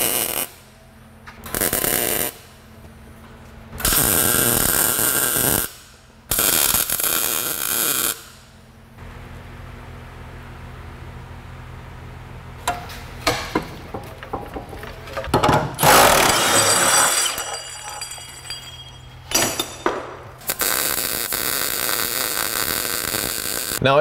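MIG welder tack-welding a new steel patch onto the rusted unibody at the rear subframe mount, heard as a series of crackling bursts of one to a few seconds each with pauses between, and a low steady hum in the pauses.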